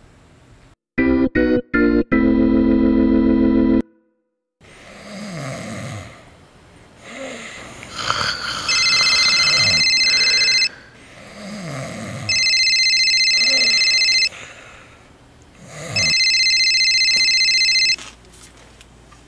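A short organ-like music sting: a few quick chords, then one held chord that stops suddenly. Then a man snoring steadily, while an electronic cell phone ring sounds three times, each ring about two seconds long.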